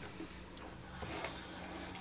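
Faint, light scratching of a felt-tip marker drawing on a playing card, over a steady low hum of room tone.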